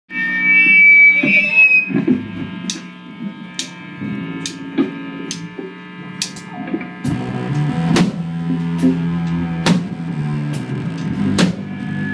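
Live rock band playing amplified in a small club: electric guitar with a drum kit keeping a steady beat, a sharp drum or cymbal hit a little faster than once a second. The band fills out from about seven seconds in.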